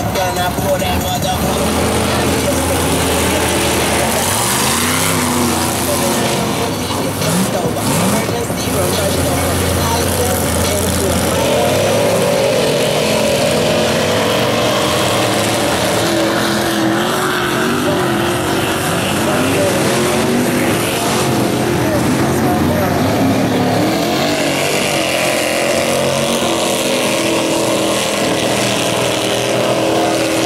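Lifted mud trucks' engines revving hard, the pitch rising and falling again and again, as they plow through a mud pit, with mud and water churning under the tyres.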